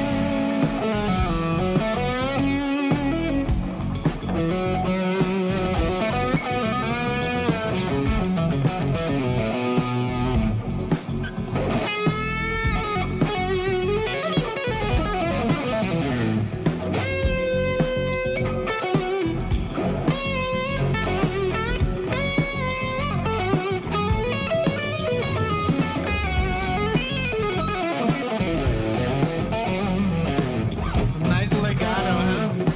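Live rock band with an electric guitar playing lead: long held, bent notes with wide vibrato over drums and bass guitar.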